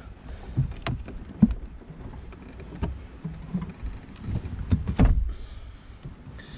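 A heavy car battery being worked loose in its plastic tray: scattered knocks and clicks of plastic and cable handling, with a heavier thump about five seconds in.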